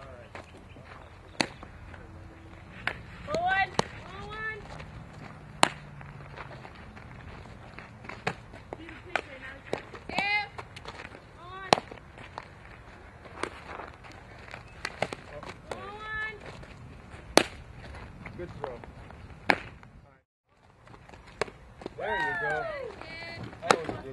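Sharp cracks and pops, one every second or two, of a softball being hit and snapping into fielding gloves during infield drills, with a few short shouted calls.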